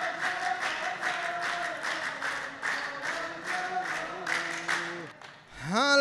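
Rows of men clapping in unison, about three claps a second, while chanting together in a group refrain of the poetry duel. The clapping and chant stop about five seconds in, and a single man's voice starts right at the end.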